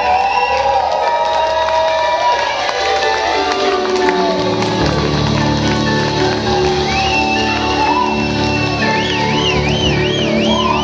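A live rock band playing: electric guitars, bass, drums and keyboard hold long sustained chords. The low end drops away and comes back in about four seconds in, and a high wavering tone joins in the second half.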